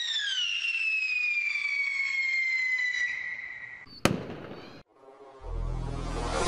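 Firework-style logo sound effect: a whistle gliding slowly downward over crackling sparks for about four seconds, then a single sharp bang with a short fading tail. A low rumble swells in near the end.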